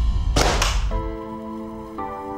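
Dramatic score with a deep bass fades out under a short whoosh sound effect about half a second in. After about a second, soft held music chords take over.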